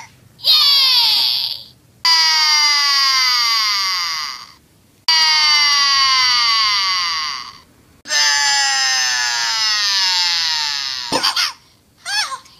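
Annoying Orange talking fruit toys playing recorded high-pitched cartoon screams through their small speakers: four long screams, each sliding down in pitch, with short gaps between. A sharp click comes near the end.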